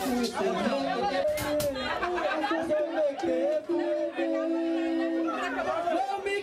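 Live vocals: several voices singing and chanting through microphones over backing music, with a long held note about four seconds in.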